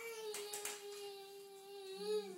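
A toddler's voice holding one long, steady call, dipping slightly in pitch near its end: his answer to "what does the horse say?", taken by the parent for a neigh.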